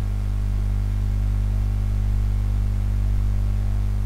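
A steady low drone that holds one unchanging chord, the background music bed that ran under the narration, continuing alone.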